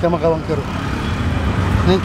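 Steady low rumble of vehicle engines in street traffic, following a brief word of speech at the very start.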